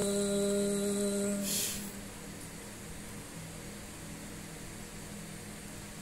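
A young woman's Qur'an recitation (tilawah) ending a long sustained melodic note, held steady about a second and a half before fading, with a brief hiss; then a quiet pause of low room hum through the microphone.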